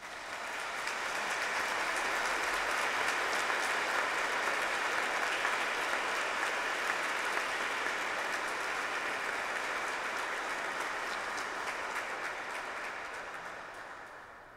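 A large congregation applauding in a cathedral. The clapping swells within the first second or two, holds steady, and dies away near the end.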